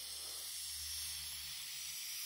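Aerosol spray paint can spraying with a steady hiss, the can nearly empty.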